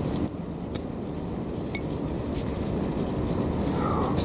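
Fingers rubbing wet mud and grit off a clay tobacco pipe fragment, with a few small clicks and squelches. Under them runs a steady low background rumble.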